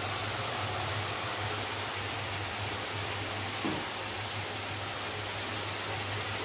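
Hot oil sizzling steadily as potato wedges deep-fry in an iron karahi, with a low steady hum underneath and a brief bump a little past the middle.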